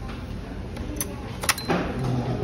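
Steady low room hum of a dining room, with two sharp clicks about halfway and three-quarters of the way through, followed by a very short high beep.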